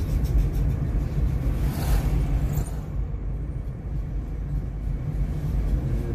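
Car driving along a road, heard from inside the cabin: a steady low engine and road rumble, with a brief swell of higher noise about two seconds in.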